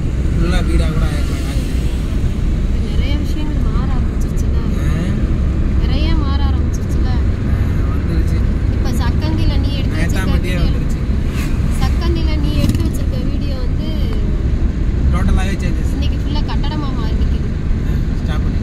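Steady low rumble of a car driving on an asphalt road, heard from inside the cabin, with people's voices talking over it.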